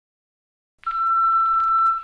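Silence, then just under a second in a single steady high electronic beep tone starts and holds, opening a dubstep and hip-hop mashup track.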